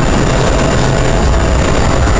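Steady Boeing 777 flight-deck noise in a flight simulator: a constant low rumble and hiss of simulated engines and airflow, with a thin high steady tone above it.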